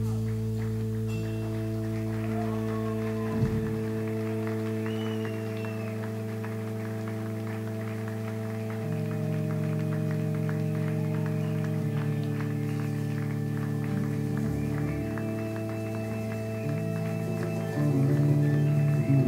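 Electric guitars and bass of a rock band holding droning, sustained notes through their amplifiers, the low notes shifting to new pitches every few seconds. A single thump sounds about three and a half seconds in.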